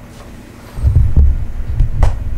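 Deep thumps and rumble of handling noise on an on-camera microphone as the camera is touched and adjusted by hand. They start about a second in.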